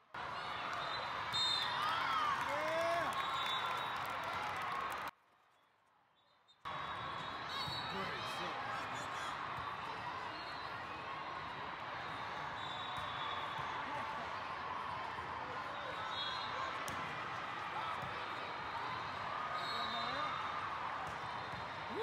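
Volleyball hall ambience: a crowd of voices chattering and calling in a large, echoing hall, with ball contacts from the rally on court. The sound drops out for about a second and a half a little after five seconds in.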